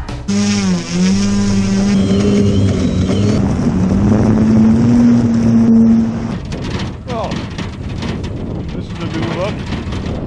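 Electric motor and propeller of a quarter-scale electric Piper J3 Cub RC model running on a tether takeoff run: a steady propeller hum that dips briefly near the start, then rises slowly in pitch. About six seconds in the hum drops away and rough wind noise on the wing-mounted camera takes over.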